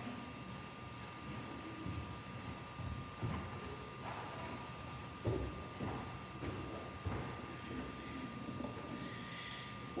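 A quiet pause in a large room, with scattered soft thumps and shuffling sounds and a faint steady tone.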